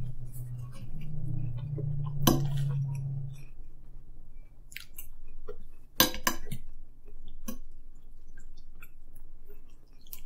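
Chewing of food, with a fork clinking on a plate a few times, about two seconds in and in a quick cluster about six seconds in. A low hum fades out after about three seconds.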